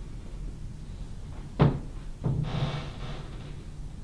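A single sharp thump about a second and a half in, followed shortly by a rustling noise lasting about a second.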